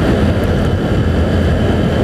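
Steady low rumble of wind buffeting the phone's microphone, mixed with the running of a Hero Splendor Plus XTEC motorcycle's small single-cylinder engine, while riding at speed.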